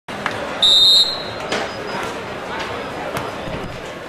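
A short, loud, steady whistle blast about half a second in, then sharp thuds of a volleyball being hit, over the chatter of a large crowd.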